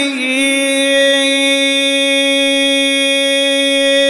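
A male reciter's voice holding one long, steady sung note, drawing out the last vowel of a line of chanted supplication.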